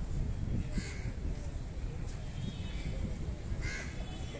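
A bird calling twice, two short calls about three seconds apart, over a steady low background rumble.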